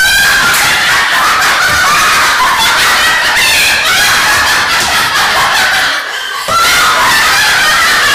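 Women laughing hysterically, with loud, high-pitched, wavering cackles that break off briefly about six seconds in.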